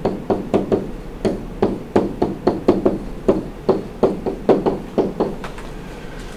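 A stylus tapping and knocking on a digital writing surface as an equation is handwritten. It makes a quick, irregular series of light clicks, a few each second.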